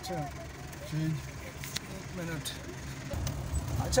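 Jeep engine running and tyres on a gravel track, heard from inside the jeep, with a low rumble that grows louder about three seconds in. Faint voices talk over it.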